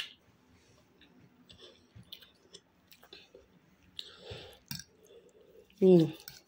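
A person chewing food, with scattered small wet mouth clicks, ending in a short hummed 'mm'.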